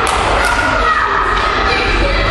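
Thuds of wrestlers hitting the ring canvas, with two sharp impacts in the first half-second, over a crowd's shouting voices.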